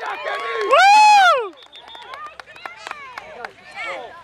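A loud, high-pitched celebratory shout about a second in, cheering the touchdown, followed by quieter spectator and player chatter.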